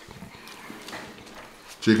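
Faint chewing and small wet clicking mouth sounds of people eating, with a voice starting to speak near the end.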